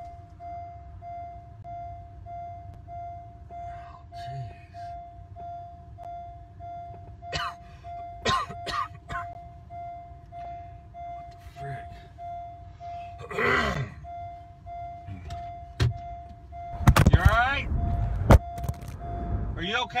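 A car's electronic warning chime beeping steadily, about two beeps a second, in a cabin where the airbag has just deployed after a crash. A person's voice breaks in a few times, loudest about three seconds before the end.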